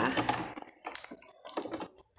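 A few irregular light clicks and rustles from hands handling a sewing machine and its thread while threading it.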